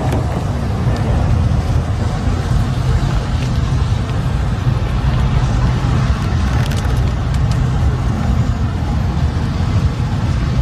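Steady low rumble of outdoor background noise, with no clear events standing out.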